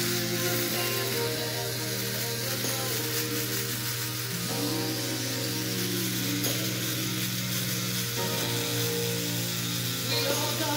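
Electric shaver buzzing steadily as it cuts beard stubble, under a slow pop-soul song with a male singer playing through a speaker.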